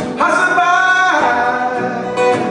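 A man singing live, holding one note for about a second near the start, over a strummed acoustic guitar.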